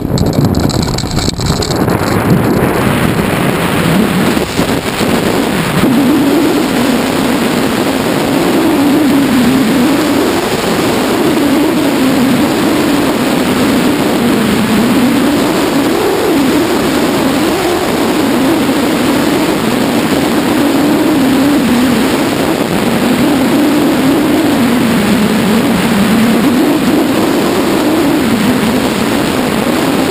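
Loud, steady rush of wind on the microphone mixed with the drone of the ultralight tow plane's engine, which wavers up and down in pitch. It starts suddenly as the tandem hang glider's aerotow takeoff roll begins and carries on through the climb.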